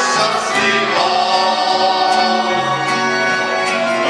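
Live folk band playing, with accordion, clarinet, keyboard and plucked string instruments, and several male voices singing together over them.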